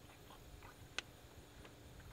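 Faint soft clicks about three a second as the primer bulb of a Stihl MS 194 T chainsaw is pressed over and over, pumping fuel into the new saw's carburettor before a cold start; one sharper click about a second in.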